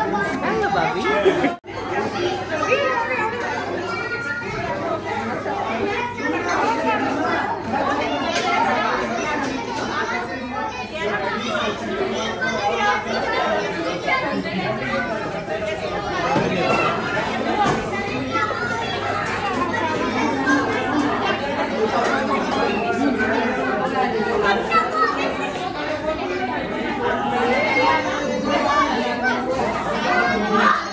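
Crowd chatter: many people talking over one another at once. The sound cuts out for an instant about one and a half seconds in.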